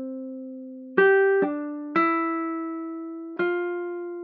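Lofi hip hop music: soft electric piano notes played one at a time with no beat, each ringing and fading away. New notes come in about one, one and a half, two and three and a half seconds in.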